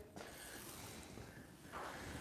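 Quiet shop room tone, then a faint rustling, peeling noise near the end as masking tape is pulled and stretched from the roll.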